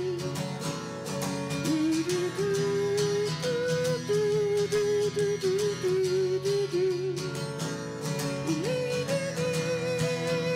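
Acoustic-electric guitar strummed through a slow ballad. A held, wavering melody line runs over the chords, stepping between notes and gliding up near the end.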